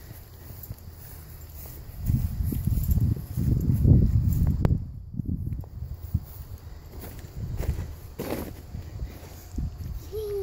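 Wind buffeting the microphone in uneven gusts, loudest about four seconds in, with a couple of light knocks.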